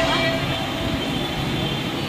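Steady din of a crowded hall: indistinct voices under a constant wash of noise.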